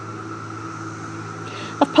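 Steady drone of a chorus of 17-year periodical cicadas, over a low steady hum; a voice starts near the end.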